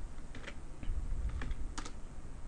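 Computer keyboard keys being pressed: a handful of separate keystrokes, with a sharp double click near the end, as a short terminal command is typed.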